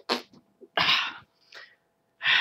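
A man's short, breathy vocal bursts, like forceful huffs or exhalations: a brief one at the start, a longer one about a second in, and a faint one near the end.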